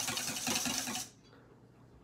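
Wire whisk swishing quickly in circles through soapy water in a stainless steel bowl, a rhythmic churning and fizzing of suds, stopping abruptly about a second in.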